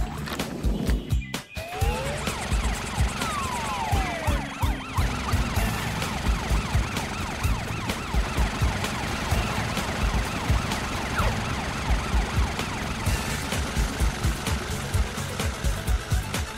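Cartoon police siren wailing over upbeat background music with a steady thumping beat.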